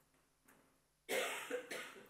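A person coughing: a sudden loud cough about a second in, followed quickly by a second one.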